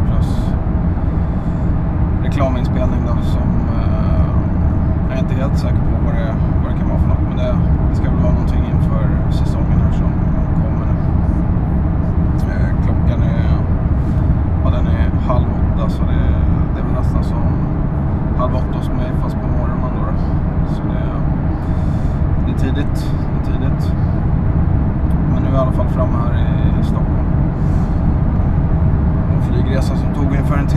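Steady low road and engine rumble inside a moving car's cabin at highway speed, with faint, indistinct voices and occasional small clicks above it.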